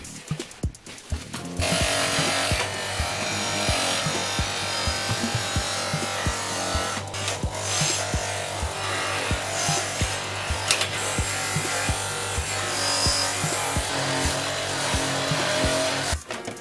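Background music with a steady beat. From about two seconds in, a Silverline bench polisher runs with a steady hum and a rushing noise as its buffing wheel works over steel armour.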